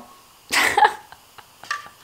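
A woman's short, breathy laugh about half a second in, followed by a few faint clicks.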